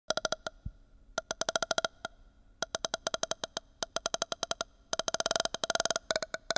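Intro sting of short, pitched electronic clicks. They come in quick bursts separated by brief pauses, then speed up into a dense run near the end.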